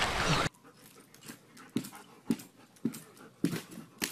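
Rushing creek water that cuts off abruptly about half a second in. Short, soft sounds follow, roughly twice a second.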